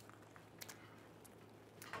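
Near silence: room tone with a few faint, soft clicks of someone chewing a mouthful of sticky rice wrapped in laver.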